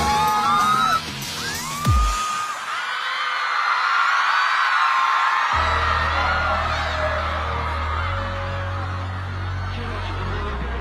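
Electronic pop intro music under a crowd of fans screaming and cheering. A falling boom comes about two seconds in, the bass drops out, and a low bass drone comes back in about halfway through.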